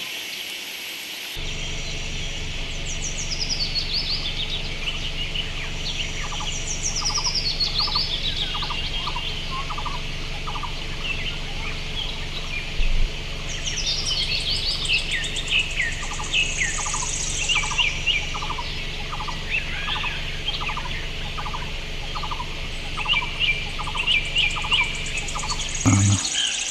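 A chorus of forest birds calling and singing. There are several quick songs that fall steeply in pitch, and a long run of short notes repeated a few times a second, over a steady low rumble that begins about a second in.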